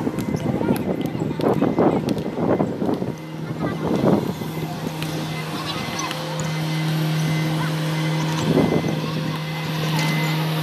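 Short bursts of people's voices over a steady low hum that sets in about three seconds in.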